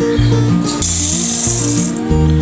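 Background music with a steady, repeating bass beat. From about a second in, dry raw rice pours into a stainless steel bowl for about a second, a bright rattling hiss of grains on metal.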